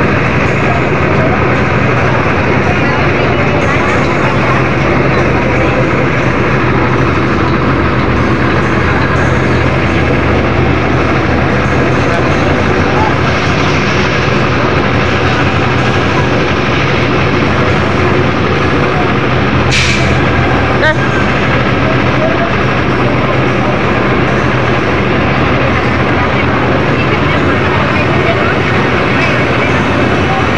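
Fire truck engine running steadily close by, a low even hum that does not change. About twenty seconds in there is one short, sharp hiss.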